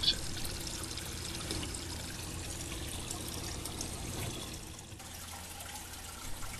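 Water trickling and pouring steadily in a home aquarium, easing slightly near the end.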